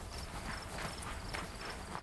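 Crickets chirping faintly, short high chirps repeating about every half second, with a few soft irregular clicks.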